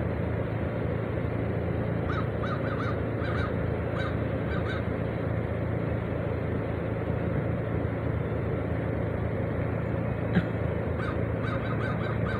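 Ravens calling in runs of short, quick notes, one run about two seconds in and another near the end, over a steady low hum.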